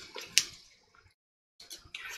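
Faint handling noise as a metal tobacco tin is held and turned while glasses are put on: one sharp click about a third of a second in, then a stretch of dead silence, then light rustling with small ticks.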